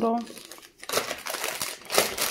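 Clear plastic packaging crinkling as packages are picked up and shuffled by hand, a dense crackle that starts about a second in.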